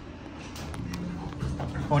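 Low, steady hum inside a stopped elevator car, with a few light clicks between about half a second and a second in. A short spoken "Oh" comes at the very end.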